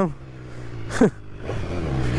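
BMW S1000R's inline-four engine running steadily at low revs as the motorcycle rolls slowly, with one short, sharp sound about a second in.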